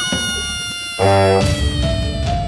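A high held squeal-like tone with many overtones, sagging slowly in pitch, then a loud low musical hit about a second in, which leads into theme music with a steady melody.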